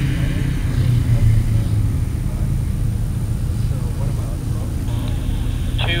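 A steady low engine rumble, even throughout, with no distinct knocks or hoofbeats standing out.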